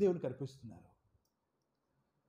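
A man speaking briefly through a headset microphone, a short phrase of under a second, then silence for the rest.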